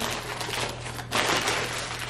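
Plastic bread bag crinkling and rustling as a hand reaches inside and pulls out a slice of bread.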